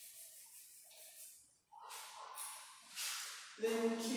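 Soft breathy hisses of a woman's breath or whispered sounds in an echoing room, then her voice comes in shortly before the end.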